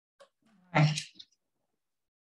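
A woman's voice giving one short, breathy utterance, "so", about a second in. A faint tick comes just before it.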